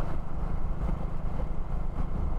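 Steady low rumble of a moving vehicle's engine and road noise, heard from on board the vehicle as it travels along the road.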